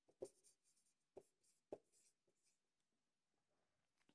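Faint squeaks and taps of a felt-tip marker on a whiteboard as a word is written, a handful of short strokes in the first two seconds, then near silence.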